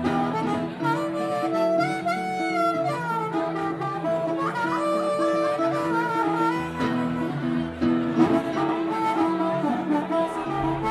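Instrumental break of a blues tune: harmonica playing held and bent notes, with a wavering passage about two seconds in, over strummed acoustic guitar.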